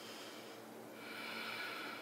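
A person's quiet breathing: a soft breath at the start, then a longer, slightly louder breath from about a second in.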